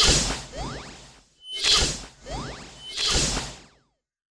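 Whoosh sound effects for an animated text transition: a quick series of about five swooshes, each swelling and fading with a gliding tone inside it. The series cuts off near the end.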